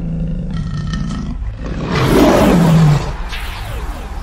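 Lion roar sound effect over a low rumble, loudest about two to three seconds in, then easing off.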